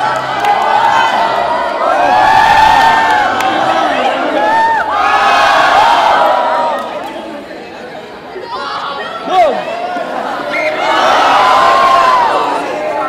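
A crowd of students screaming and cheering in waves as a model volcano shoots out fire and sparks, loudest from about two to six seconds in and again near the end. A single sharp pop comes about nine seconds in.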